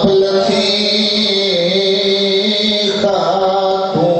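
A man's voice chanting verse in long, held notes that waver slightly and step down in pitch now and then, in the chanted style of a majlis recitation.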